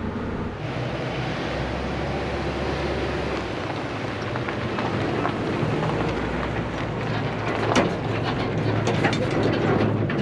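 A pickup truck's engine idling with a steady rumble. From about seven seconds in, crunching footsteps on gravel join it.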